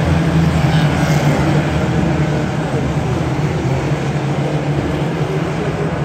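A pack of Ministox race cars running hard around the track together, a dense drone of several small engines. It is loudest in the first couple of seconds as they pass, then eases a little.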